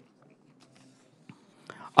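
A pause in a man's speech at a podium microphone: near silence, with a faint click a little past halfway and a short, faint intake of breath just before he speaks again.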